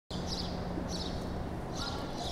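Outdoor street ambience: a steady low rumble with soft, high clicks repeating about every two-thirds of a second.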